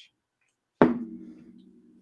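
A single sharp knock about a second in, followed by a low ringing that dies away over about a second.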